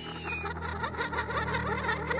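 A mouth-blown game call's high, rising whistle tapers off about half a second in. Then a rapid, high-pitched chattering, like giggling, sets in and grows denser.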